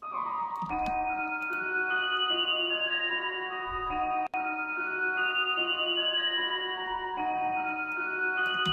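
A dark trap-style melody played back from the FL Studio piano roll on an Omnisphere synth patch: overlapping sustained notes stepping up and down. Playback cuts out for an instant about four seconds in as the loop jumps back to its start and carries on.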